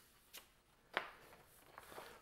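Mostly quiet handling of a sheet of printed decal paper, with two short faint clicks, one about a third of a second in and a slightly louder one about a second in, and a little rustle near the end.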